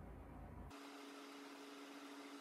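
Near silence: faint room tone that changes abruptly less than a second in, to a faint steady hum with light hiss.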